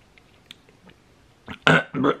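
A few faint clicks, then near the end a man clears his throat loudly.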